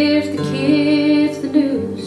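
A woman sings a drawn-out line with vibrato over acoustic guitar in a folk-blues song.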